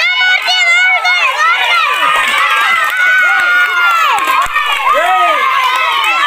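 A crowd of many voices, many of them high-pitched, shouting and calling out all at once, loud and continuous.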